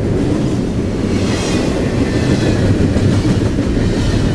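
CSX double-stack container train passing close by: a steady loud rumble of steel wheels on the rails. A faint high squeal comes in about a second in.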